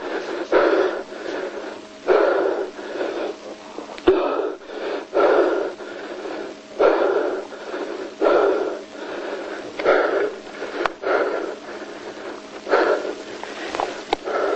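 A person breathing hard in loud, rasping, wheezing gasps, with some strained groaning, about one gasp every second or so, close to the microphone.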